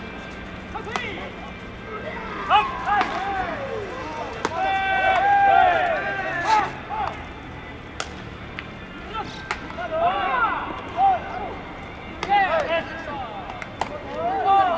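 Baseball infielders shouting calls during infield fielding practice, one long drawn-out call near the middle, with sharp cracks of balls being hit and caught in leather gloves scattered through it.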